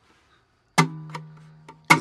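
Acoustic guitar strummed once about three-quarters of a second in, the chord ringing and slowly fading for about a second. A second strum comes right at the end.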